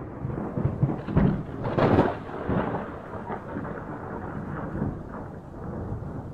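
Rolling thunder with rain, starting suddenly and loudest about two seconds in, then rumbling on more steadily.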